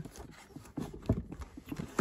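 Plastic Blu-ray cases clicking and knocking against each other as one is worked back into a tight row on a shelf: a run of faint, irregular light knocks.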